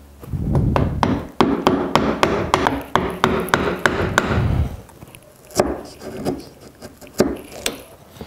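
Wooden mallet striking a chisel to chop down into a mortise in a hardwood post. A rapid run of blows, about four or five a second, lasts for the first four and a half seconds, then a few single blows follow.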